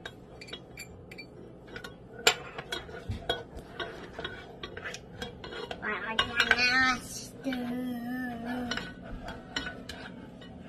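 A spatula stirring oats in a pot, with repeated light clicks, knocks and scrapes against the pan. About six seconds in, a voice makes brief wordless sounds, first high, then a lower steady hum.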